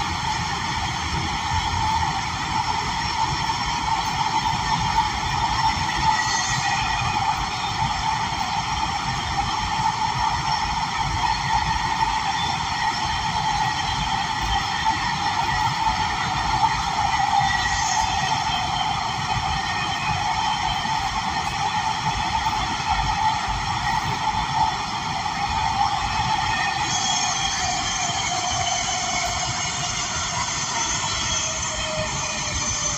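A 1991 Breda A650 subway car running at speed through a tunnel, heard from inside the car. There is a steady rumble and rolling noise with a ring of steady high tones. A tone falls slightly in pitch near the end.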